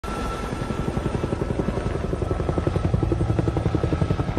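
Black Hawk-style military helicopter flying past low, its main rotor beating in rapid, even pulses with a steady high whine above.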